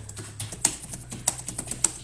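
A quick, irregular run of light clicks and taps: handling noise.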